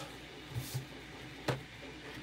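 Quiet handling of a fineliner pen on a craft cutting mat, with faint low knocks about half a second in and one sharp click about one and a half seconds in.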